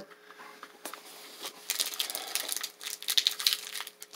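Plastic cereal-bar wrapper crinkling as it is handled and opened, a run of small irregular crackles starting about a second in.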